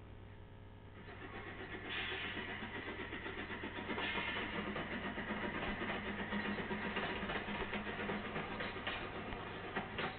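A motor-like noise from a video playing on a device, building up about a second in and then running on steadily.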